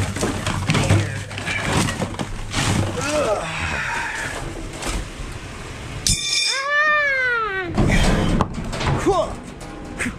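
Cast aluminum hand wheels clattering and pinging as they are tossed one after another onto concrete pavement. About six seconds in, a long call rises and falls in pitch, with shorter downward-sweeping calls near the end.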